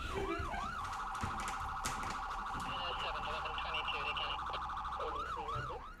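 An electronic siren sounding steadily, its pitch sweeping up and down a few times a second. About a second in it switches to a rapid warble, and near the end it returns to the sweeping pattern.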